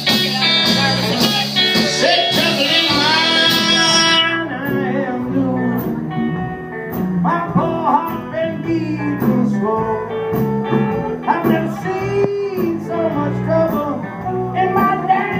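Live band playing: electric guitars, bass and drums, with a singer. The bright, full sound thins out about four seconds in, leaving a sparser groove under the voice.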